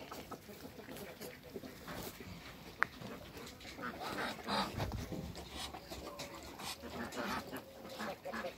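Farmyard poultry sounds: chickens clucking among Muscovy ducks, made up of scattered short calls and scuffles, with one sharp click just before the middle.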